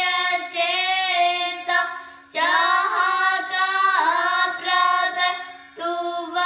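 Two children singing a Sikh kirtan shabad together in raag Bhairo, over a steady drone note. The sung phrases break off briefly about two seconds in and again near the end.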